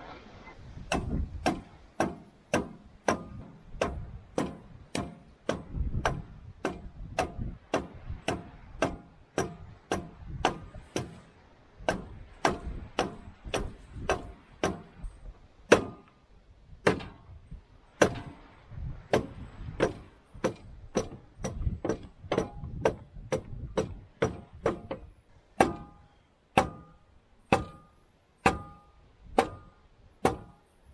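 Repeated blows through a wooden block driving the rod and gland of a John Deere 410 loader's rebuilt hydraulic cylinder into the barrel, about two strikes a second, many with a short metallic ring.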